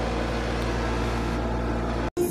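A steady, even machine hum with strong bass, unchanging throughout, cut off abruptly at the end.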